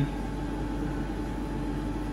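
Steady low electrical or mechanical hum with a faint even hiss, the background of a commercial kitchen, with no clinks or knocks.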